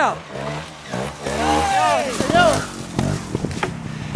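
A trial motorcycle engine running low and steady in the river. A voice calls out over it with rising-and-falling shouts around the middle.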